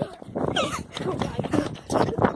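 Quick footfalls and rustling handling noise of someone running with a phone, with a short high-pitched yelp about half a second in.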